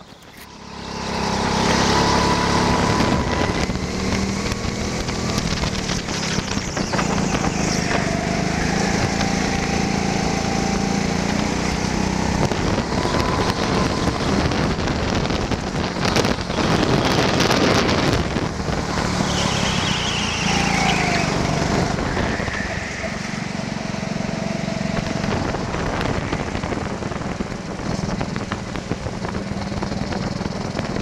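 Go-kart engine running hard as the kart laps the track, heard from the driver's onboard camera. Its note rises and falls as the kart accelerates and slows through the corners. The sound comes up sharply about a second in.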